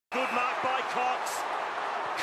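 A television commentator calls the play in quick, excited speech over the steady noise of a large stadium crowd.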